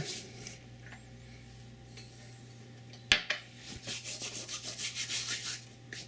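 Dried Mexican oregano being crushed and rubbed between the palms: a run of short, dry, quickly repeated rubbing strokes in the second half. A single sharp click comes about three seconds in.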